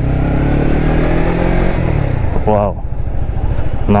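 Honda CBR150R's single-cylinder four-stroke engine revving up hard under acceleration, its pitch climbing for about two seconds and then falling away.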